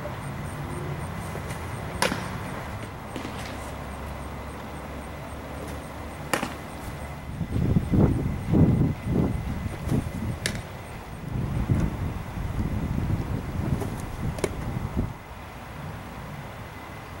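Baseball pitches smacking into the catcher's leather mitt: four sharp pops, about four seconds apart. An irregular low rumble through the second half is louder than the pops, loudest about eight seconds in.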